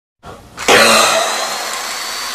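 Cartoon sound effect of rock crumbling and debris falling: a faint rustle, then a sudden loud rush of gritty noise about half a second in that eases off only slowly.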